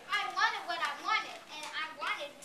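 Children's voices talking in short, high-pitched phrases.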